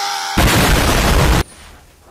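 A held shout, then a loud cartoon crash sound effect of a cage being smashed open. The crash lasts about a second and cuts off suddenly.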